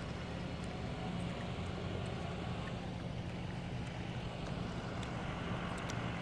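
A vehicle engine idling: a steady low hum that holds unchanged throughout.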